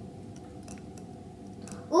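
Quiet background with a faint steady hum and a few faint, light ticks.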